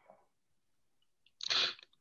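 A single short, sharp breath noise from a person, about half a second long, shortly after the middle of an otherwise near-silent stretch.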